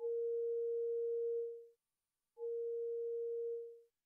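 Software synthesizer sine-wave tone from the Landscape instrument's sine layers: two notes of the same steady, pure mid pitch. The first is held about a second and a half and fades away; after a short silent gap the second sounds and fades near the end.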